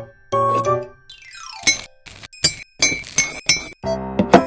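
Background music with a rising glide, then a quick run of light glassy clinks and taps from a tiny metal mesh strainer against a small glass bowl.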